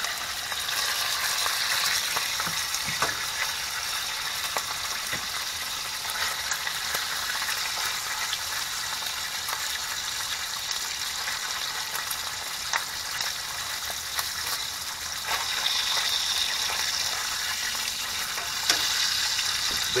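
Bacon strips frying in an open pan: a steady sizzle, louder near the start and again toward the end, with a few light clicks of a fork and a wooden spatula moving the strips in the pan.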